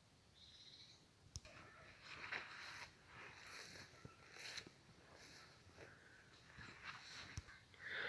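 Near silence, with faint intermittent rustling and one light click about a second and a half in.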